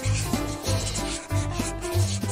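Background music, with notes changing every fraction of a second, over the dry rubbing of a felt-tip marker drawing on paper.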